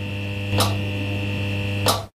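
A steady, buzzy low electronic hum with a short sharp hit about half a second in and another near the end.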